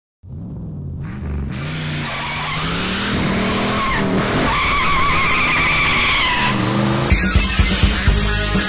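A car sound effect: an engine revving up and down, with tyres squealing through the middle. A rock band with drums comes in about seven seconds in.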